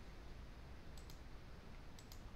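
A couple of faint computer mouse clicks about a second in, and another near the end, over a low steady room hiss.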